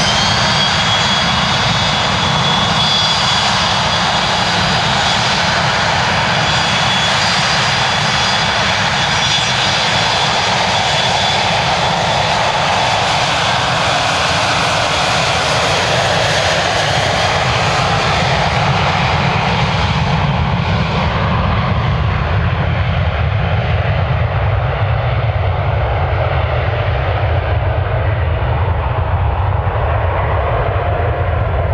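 Dassault Falcon 7X's three Pratt & Whitney Canada PW307A turbofans at take-off power: a steady high whine over a loud rush. From about twenty seconds in, the whine fades and a low rumble takes over as the jet rolls away down the runway.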